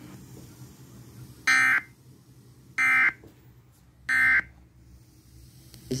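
Emergency Alert System end-of-message data bursts: three short, identical buzzy digital tones about a second apart, playing through a small portable radio's speaker. They mark the end of the broadcast alert.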